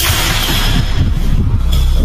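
Dramatic film background music, dense and noisy with a deep rumble underneath.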